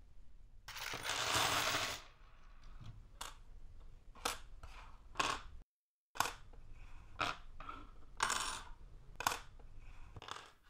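Small Meccano metal parts (strips, brackets, nuts and bolts, with rubber tyres) tipped out of a plastic box onto a table in one loud clattering rush about a second in, followed by separate metallic clicks and clinks as pieces are set down one at a time.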